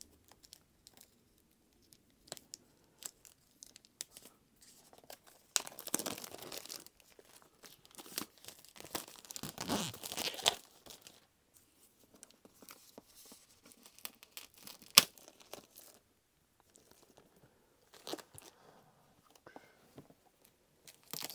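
Plastic shrink-wrap being torn and peeled off a boxed hardcover book: scattered light crackles, two longer spells of tearing and crinkling about six and ten seconds in, and a single sharp tap about fifteen seconds in.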